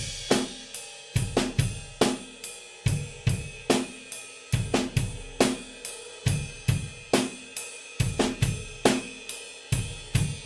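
Acoustic drum kit played loud in a steady rock groove: a cymbal keeping eighth notes over bass drum and snare backbeats.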